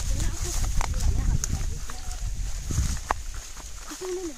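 Footsteps and the crackle of dry maize leaves as people walk through a field, over a low rumble of wind or handling on the microphone and a steady high hiss. A few sharp crackles stand out.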